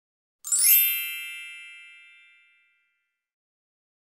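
A single bright chime struck once about half a second in, ringing with many high metallic tones and fading away over about two seconds.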